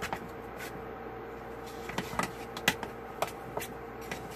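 Spoon stirring corn masa and water into tortilla dough in a mixing bowl, giving irregular clicks and knocks against the bowl, about eight in all, over a steady faint hum.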